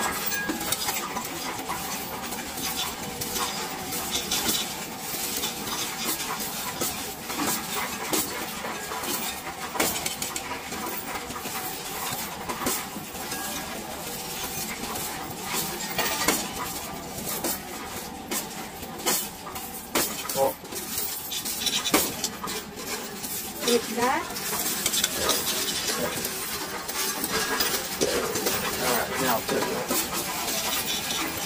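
Loose coins clattering and clinking in the tipped-up tray of a Coinstar coin-counting machine as they are pushed by hand into the machine, a dense, irregular jingle of many small metal impacts.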